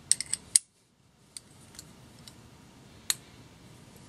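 Small metal clicks from handling a deburring tool's handle and its telescoping attachments. A quick cluster of four clicks comes at the start, then a few faint ticks and one sharp click about three seconds in.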